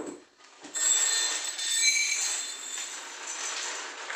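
Clear plastic bag crinkling and rustling in the hands as it is handled over a tray, with high squeaky crackles. It starts just under a second in and eases off near the end.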